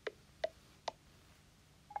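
iPad VoiceOver gesture feedback: three short, faint clicks about 0.4 s apart as a finger drags up from the bottom edge of the screen. The third click marks the point where letting go opens the app switcher.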